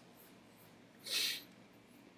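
A short breath through the nose, about half a second long, about a second in, over faint room tone.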